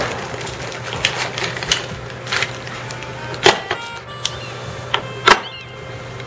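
A few light clicks and taps from fly-tying tools being handled at the vise, the sharpest about three and a half and five seconds in, over a steady low hum.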